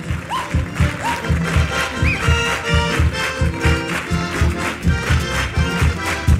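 Guitars and accordion playing a lively Chilean folk tune with a steady strummed beat.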